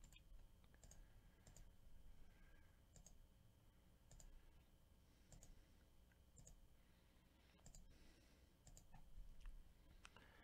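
Faint computer mouse clicks, about one a second, as an on-screen button is clicked over and over.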